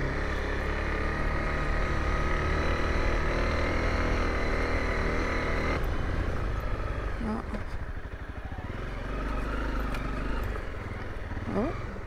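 Honda CRF250L's single-cylinder four-stroke engine running steadily while riding a dirt trail. Just before the halfway point the sound changes abruptly to a lower, rougher engine note.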